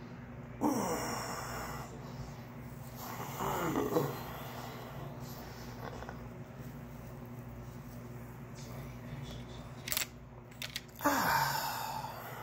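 A man groaning in pain three times while squeezing a cyst on his arm, each groan sliding down in pitch. There is a brief click shortly before the last groan.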